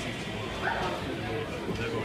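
Audience chatter in a bar between songs, with a short rising high-pitched call about two-thirds of a second in.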